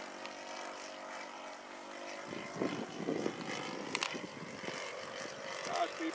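OS 120 four-stroke model engine of a radio-controlled Tiger Moth biplane, heard at a distance, running steadily in flight with an even drone. About two seconds in, a low irregular rumble joins it, and there is a sharp click near four seconds.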